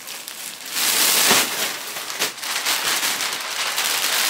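A plastic shipping bag rustling and crinkling as it is handled and shaken, loudest about a second in, with many small crackles.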